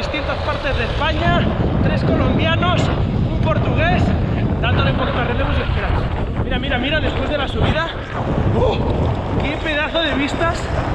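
Wind buffeting the microphone of a camera carried by a rider on a moving mountain bike: a dense, steady rumble, with a man's voice talking over it much of the time.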